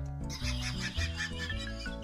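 Background music with a man's high-pitched, whinnying laugh starting about half a second in and breaking off near the end.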